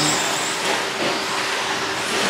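Electric short course RC trucks with 13.5-turn brushless motors running around the track, a steady whirring hiss with no single loud event.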